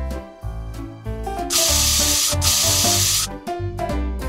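Aerosol spray can sprayed in two bursts of hiss, each just under a second, with a short break between them, over background music.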